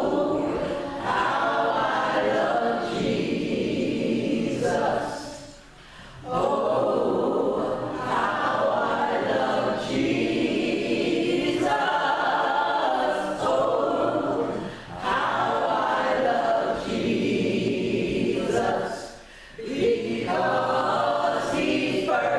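Three women singing a gospel song a capella into microphones, in long held phrases with brief breaks for breath about six, fifteen and nineteen seconds in.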